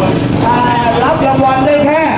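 A motorcycle engine running at high revs, its pitch slowly rising and falling, with men's voices over it.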